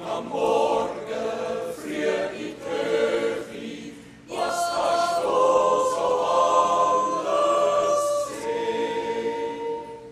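A choir singing long held notes in several parts at once, breaking off briefly about four seconds in and then going on with a second held phrase that dies away near the end.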